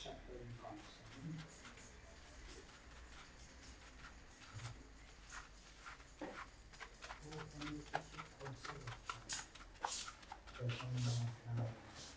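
Fingers scrubbing shampoo lather into short hair, a close, wet crackling and squishing of foam on the scalp. A low voice murmurs briefly in the background a couple of times.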